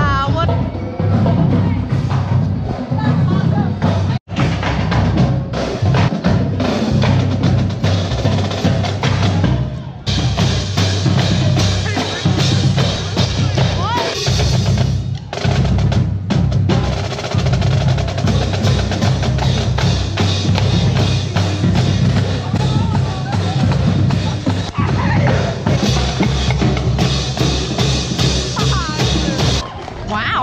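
Street drumline playing: snare, tenor and bass drums in a fast rhythm with rolls, over crowd chatter.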